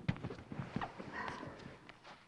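Wrestlers' bodies, knees and wrestling shoes knocking and scuffing on a foam wrestling mat as they roll through a tilt, a quick irregular run of thuds that thins out after the first second, with one more near the end.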